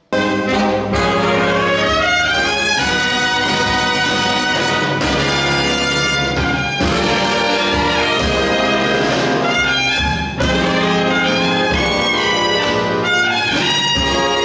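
A jazz big band of saxophones, trumpets and trombones over guitar, bass and drums, all coming in together at once at full volume and playing on, with the brass loudest and sharp drum accents throughout.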